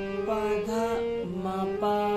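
Harmonium playing a slow melody by hand: sustained reedy notes, each held about half a second before moving to the next, with about four note changes.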